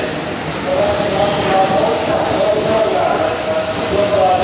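Hokuso Railway 9000 series train pulling in and slowing along the platform, its running noise steady. A thin, steady high squeal from the brakes or wheels joins about one and a half seconds in as it draws to a stop.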